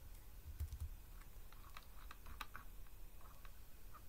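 Computer keyboard being typed on: a short run of light key clicks in the middle, with a few soft low thumps just before them.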